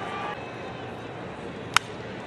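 One sharp crack of a baseball bat hitting a pitched ball, near the end, over the steady background noise of a ballpark.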